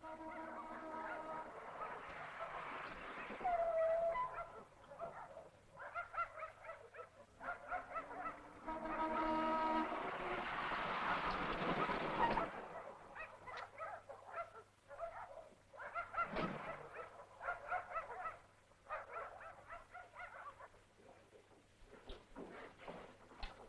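Dogs barking in repeated bursts, with a car driving in at walking pace around the middle.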